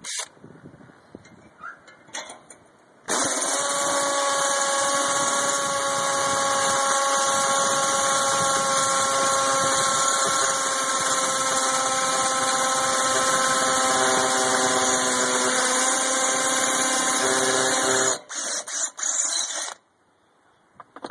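Electric drill boring into the brick wall at the edge of a metal wall vent cap. It starts about three seconds in and runs steadily for about fifteen seconds, its motor whine sagging slightly in pitch, then stops, followed by a few light knocks.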